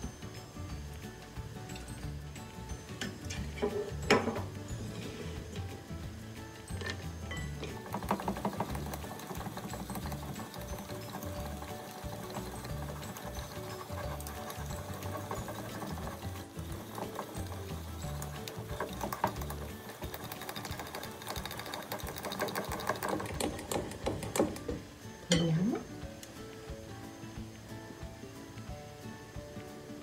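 Wire whisk beating melted chocolate in a ceramic bowl, its wires ticking fast against the bowl in two long runs, while the chocolate is stirred down to tempering temperature. Quiet background music underneath.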